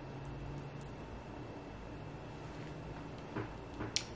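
Quiet room tone: a faint steady low hum with a thin high whine. Two small clicks come near the end.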